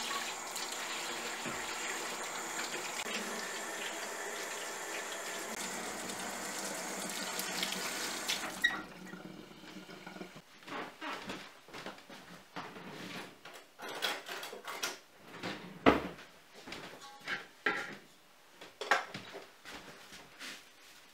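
Water running steadily from a tap into a sink, shut off abruptly about nine seconds in. A string of short, scattered knocks and clatters follows.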